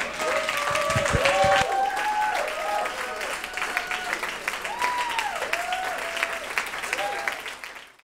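Audience applauding, with voices calling out over the clapping; the sound fades out near the end.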